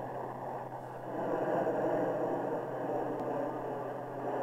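Grumman F-14A Tomcat's twin TF30 turbofans at military power, no afterburner, as the jet climbs away from a carrier catapult launch: a steady rushing jet noise that swells about a second in.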